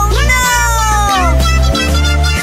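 A cat's meow, one long call falling in pitch, over background music with a steady bass beat.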